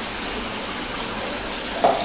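Three spillway waterfalls pouring steadily into a koi pond: a continuous splash of falling water.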